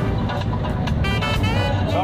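Steady low engine and road rumble of a moving vehicle, heard from inside, with a song playing over it.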